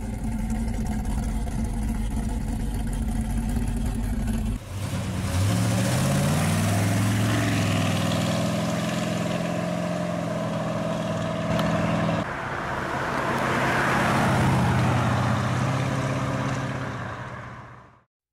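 1967 Dodge Coronet muscle car engine with a steady, deep idle for the first few seconds. Then a Coronet pulls away, its engine note rising as it accelerates, running on, swelling again and fading out near the end.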